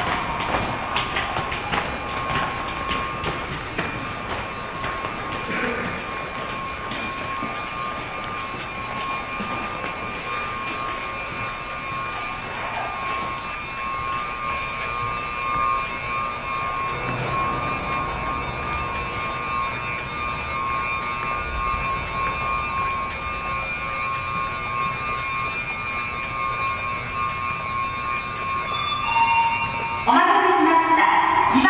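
Sapporo Tozai Line subway train standing at the platform with its doors open, its equipment giving a steady hum with high, pulsing tones over a low rumble. A few footstep clicks in the first seconds.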